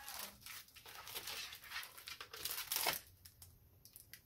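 Plastic packaging crinkling and rustling in irregular handling strokes, loudest about three seconds in, then a few faint ticks.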